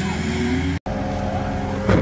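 Pickup truck towing a loaded trailer pulls away, its engine rising in pitch as it accelerates. The sound cuts off abruptly before a second is out and gives way to a steady vehicle hum, with a sharp knock near the end.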